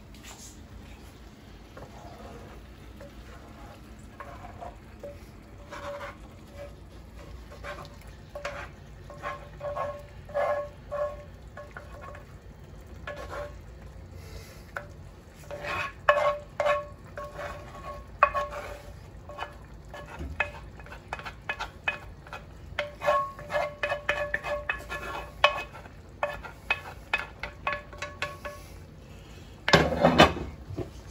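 Wooden spoon scraping and knocking against a cast-iron skillet as thick sauce is scraped out onto shrimp in a second skillet; the knocks make the iron pan ring briefly with a clear tone. The scraping starts a few seconds in and comes in quick runs, busiest in the second half.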